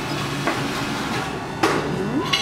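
Breakfast-table tableware clatter over a steady low hum, with one sharp knock about a second and a half in.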